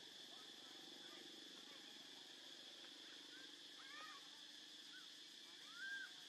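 Faint outdoor ambience: a steady high insect drone, with a few short, rising-and-falling calls from about halfway in and again near the end.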